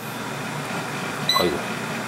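Electric air fryer's fan running steadily after the fryer is switched on. A short electronic beep comes about a second in.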